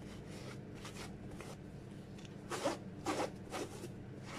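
Microfiber cloth rubbing over a suede sneaker upper in short raspy strokes, faint at first, then three louder strokes in the second half.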